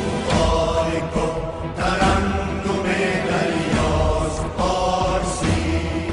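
A Persian song: sustained, chant-like vocals over instrumental backing with a deep bass.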